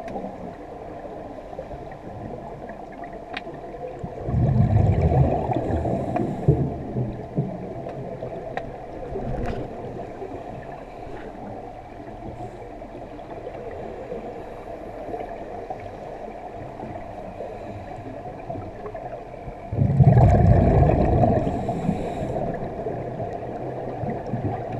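Underwater: a steady hum, with two louder rushes of bubbling, one about four seconds in and one near the end, from a scuba diver exhaling through the regulator.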